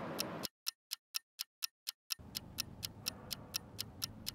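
Clock-ticking sound effect, an even series of sharp ticks about four a second. For a stretch in the first half the ticks sound over dead silence, then faint room noise comes back under them.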